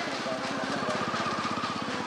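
A small engine running nearby with a fast, even beat.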